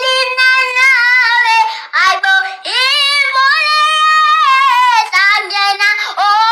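A woman singing alone in a very high voice, unaccompanied, with two long held notes that waver, the second one held for about two seconds.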